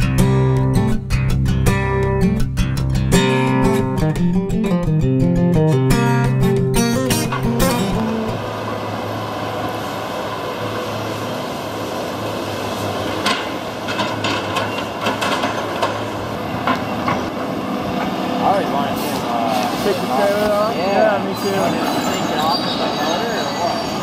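Plucked guitar music for the first several seconds, then a tracked John Deere logging machine running at a log landing: a steady diesel engine and hydraulic noise, with scattered knocks of logs being handled by its boom grapple.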